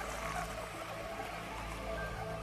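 Film score holding sustained low notes under a soft, even rushing hiss.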